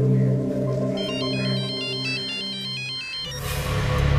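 A mobile phone ringtone, a short electronic melody of high stepping notes, plays from about a second in and stops just after three seconds, when the call is answered. Sustained low notes of background score run beneath it.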